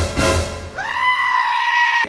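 Music with a beat, then a long, high-pitched scream starting about three-quarters of a second in. The scream rises sharply at first, then holds on one pitch for over a second.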